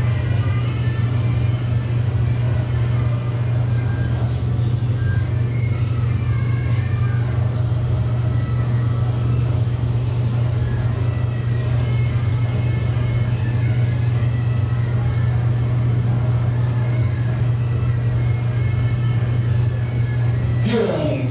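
A steady low hum runs unchanged throughout, with faint voices in the background.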